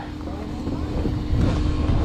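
Snowmobile engine idling steadily, under a low rumble of wind on the microphone.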